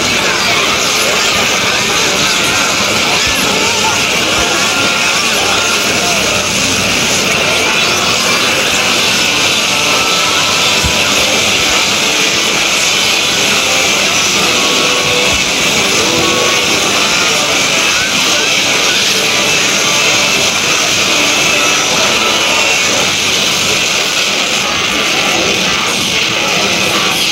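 Many video soundtracks playing on top of one another at once, their music and voices merged into a loud, steady, hissy din with no single sound standing out.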